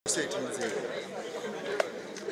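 Background chatter of a group of people talking at once, their voices overlapping, with a single sharp click just before the end.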